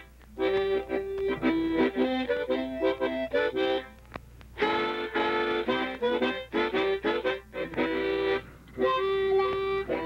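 Harmonica playing a tune in quick chords, in three phrases with short breaks between them.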